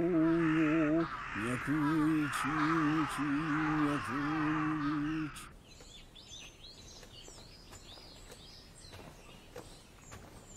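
A man chanting a Buddhist sutra in long, held notes over a steady hiss, stopping suddenly about five seconds in. After that, faint birds chirp against a quiet background.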